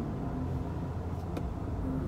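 Car running, heard from inside the cabin: a steady low rumble, with one faint click about one and a half seconds in.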